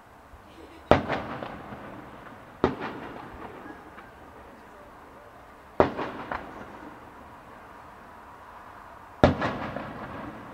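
Aerial firework shells bursting in the sky: four sharp bangs a few seconds apart, each trailing off in echoes, the first and last followed by a short run of smaller cracks.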